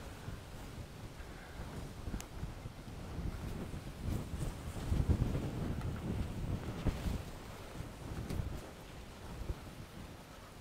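Wind blowing across a handheld phone's microphone, a low rumble that gusts harder in the middle.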